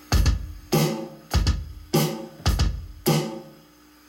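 Electronic drum kit playing a steady bass drum and snare pattern: deep kicks alternating with brighter snare hits, three of each, a little over half a second apart.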